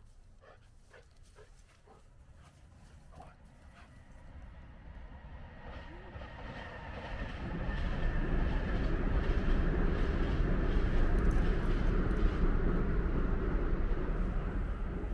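Train passing nearby: its rumble builds gradually through the first half and stays loud through the second half.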